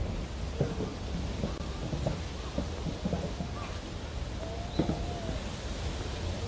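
Steady low rumble of wind on the microphone, with faint scattered voices of people in the garden and a few light clicks.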